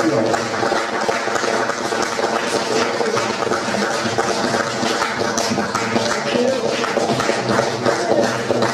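Audience applauding steadily at the end of a live song, with some lower sustained tones underneath.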